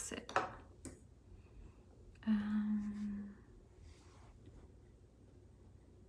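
A woman's voice: a few brief muttered sounds at the start, then a single steady hum on one pitch lasting about a second, a couple of seconds in.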